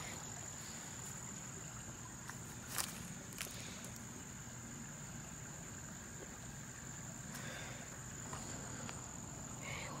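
Insects calling steadily in one high, even tone, with two short clicks about three seconds in.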